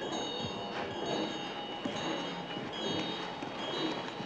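Small bells ringing: several high tones overlap and hang on, starting and stopping at different moments over a low, noisy background with a few light clicks.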